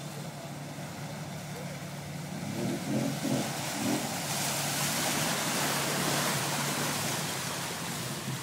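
Jeep Cherokee engine working under load through deep water, revving up and down about two to four seconds in. Then a loud rush of water splashing and surging as the Jeep pushes through the hole close by.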